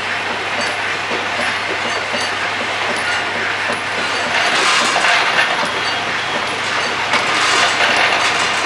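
Automated ammunition production-line machinery running: a steady mechanical clatter with many small metallic clinks over a low steady hum.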